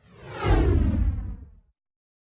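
A whoosh sound effect for an animated title-card transition: it swells in about half a second with a deep low rumble underneath, then sweeps down in pitch as it fades out within about a second and a half.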